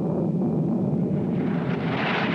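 Jet fighter engine roar: a steady deep rumble, joined about a second and a half in by a louder, crackling rush as the jets close head-on.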